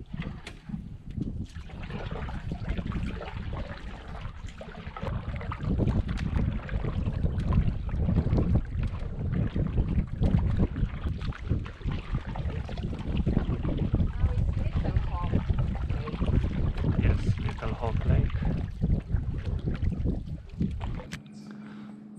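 Wind buffeting the microphone on a moving canoe, with paddle strokes splashing in the water. The wind rumble drops away about a second before the end.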